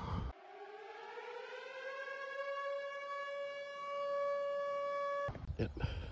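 A siren-like droning tone that rises in pitch over the first two seconds, then holds steady and cuts off suddenly near the end.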